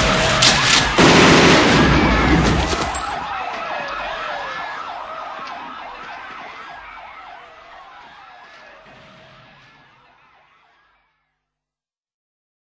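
The theme's music stops about three seconds in, leaving a wailing siren effect, rising and falling in pitch, that fades away until it is gone about ten seconds in.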